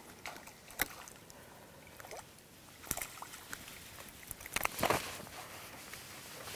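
Faint water splashing and a few sharp handling clicks and knocks as a hooked fish is wound in on a spinning reel and waggler rod, with a small cluster of knocks about five seconds in.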